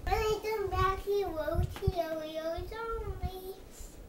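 A young boy singing a wordless sing-song tune, the pitch wavering up and down, fading out near the end.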